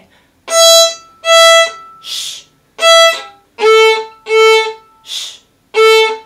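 Violin playing the 'ice cream, shh, cone' rhythm on open strings. First comes the open E string: two short bowed notes, a whispered 'shh' for the rest, then one more note. The same pattern follows on the lower open A string.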